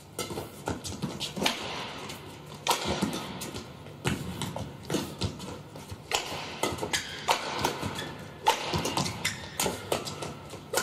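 Badminton rally: rackets striking the shuttlecock in a string of sharp hits roughly every second, mixed with shoe squeaks and footfalls on the court floor.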